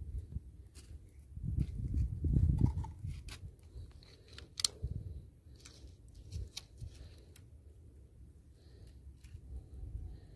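Quiet handling noise around a handheld salinity meter standing in a small cup of water: a low rumble that swells for a second or two early on, and a few light clicks and taps, the sharpest near the middle.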